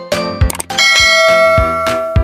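Upbeat intro music with a regular drum beat. From a little under a second in, a bright bell chime sound effect, a notification 'ding', rings on for over a second on top of it.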